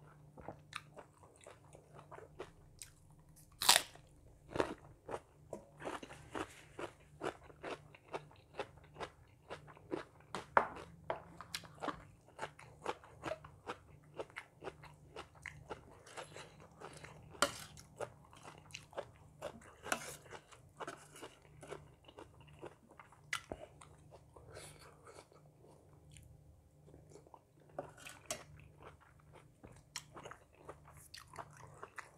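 A person eating close to the microphone: wet chewing and crisp crunching of raw vegetables and salad, a couple of bites or crunches a second, with a few sharp, much louder crunches standing out.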